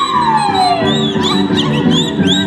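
Live Andean folk dance music with a steady rhythm, and a long high note that slides downward over the first second.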